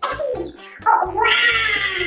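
A long, drawn-out meow starting about a second in, over background music with a steady beat.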